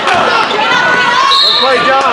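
Spectators in a gym calling out and talking over a basketball game, with a basketball bouncing on the hardwood court. There is a brief high-pitched tone about a second and a half in.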